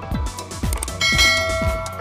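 Electronic background music with a steady kick-drum beat, and about a second in a bright bell-chime sound effect rings out and fades: the notification-bell ding of a subscribe-button animation.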